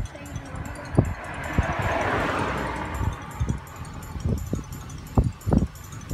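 Road and wind noise of a moving car, with a rush of sound that swells and fades about two seconds in, over a low rumble and short wind thumps on the microphone.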